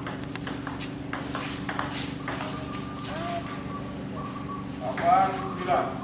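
Table tennis ball being hit back and forth in a rally, a run of sharp ticks off the paddles and the table.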